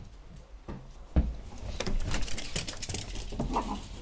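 Pet dogs stirring as they are let out: a low thump about a second in, then light pattering and clicking, and a brief whine near the end.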